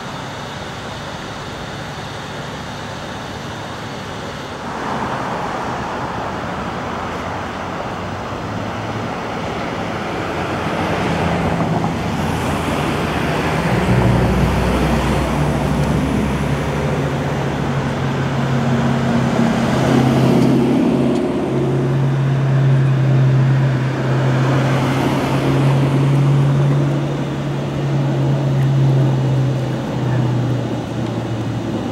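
Road traffic going by in waves. About halfway through, a steady low engine hum sets in and becomes the loudest sound.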